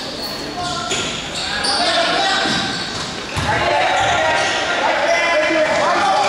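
A basketball game in an echoing gym: the ball bouncing on the court among players running, with players and spectators shouting short calls.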